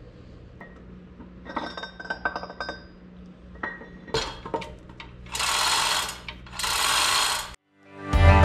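Steel transmission gears and splined shafts clinking and ringing as they are handled and slid apart, with a few sharp knocks. Near the end come two loud hissing bursts of about a second each.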